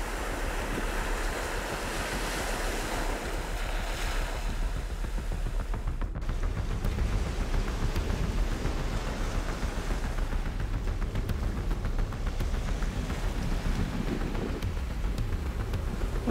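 Small waves washing in over sand and rock at the shoreline, a steady surf rush. About six seconds in, the sound cuts briefly and continues as a steady rush with more low rumble of wind on the microphone.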